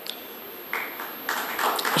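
A short pause in a man's speech over the hall microphone: low room noise at first, then a soft noise that builds through the second half, until he speaks again at the very end.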